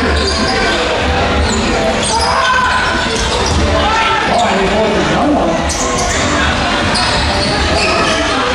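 A basketball bouncing on a hardwood court during play, echoing in a large indoor hall, over a steady background of voices.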